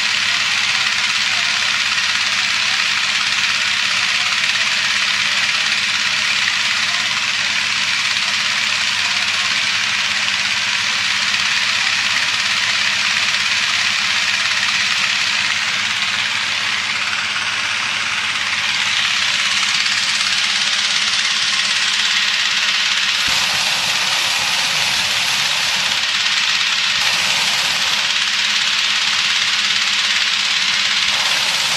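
Petrol-engine inflator fan running steadily, blowing air into a hot-air balloon envelope during cold inflation. The tone of the noise shifts about two-thirds of the way in.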